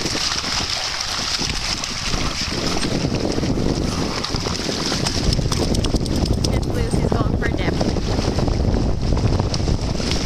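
Wind buffeting the microphone, with water splashing as dogs run through shallow seawater; the splashing gets busier and louder about halfway through.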